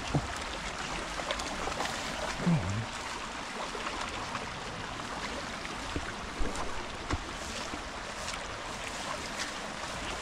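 Steady rushing of a small rocky moorland stream mixed with the swish and light crunch of footsteps through tall tussock grass.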